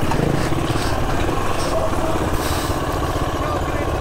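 Enduro dirt bike engine running steadily at low speed on a rocky trail, heard close up as a rapid, even beat.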